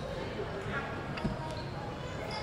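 Basketball gym ambience: faint crowd voices with a few light knocks from play on the court.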